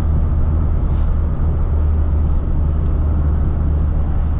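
Classic Mini's four-cylinder A-series engine heard from inside the cabin while cruising at a steady speed: an even low drone with road noise, no revving or gear change.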